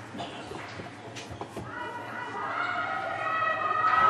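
Voices of volleyball players calling out, echoing in a large sports hall, with a few light knocks in the first two seconds; the voices grow louder from about two seconds in.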